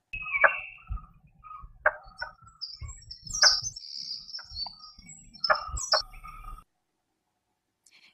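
Blue-bearded bee-eater calling: a series of sharp, knocking notes about a second or so apart, akin to someone chopping trees, stopping about six and a half seconds in.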